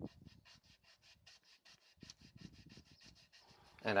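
Hand sanding of walnut with sandpaper: faint, quick back-and-forth rubbing strokes, about four or five a second.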